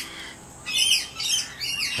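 Rainbow lorikeets screeching: three short, shrill calls in quick succession in the second half.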